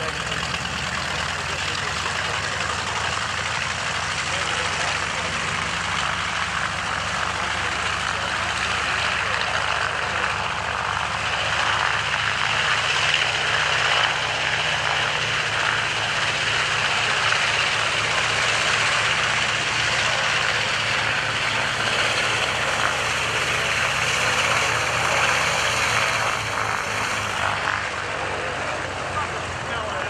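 Small propeller-driven liaison airplanes flying overhead, a continuous engine drone that grows louder through the middle and eases off near the end.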